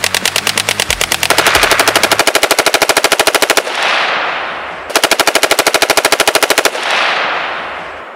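Automatic gunfire, a machine gun firing long rapid bursts. The first burst stops about three and a half seconds in and rings out in a fading echo. A second burst of about two seconds starts about five seconds in and also dies away in echo.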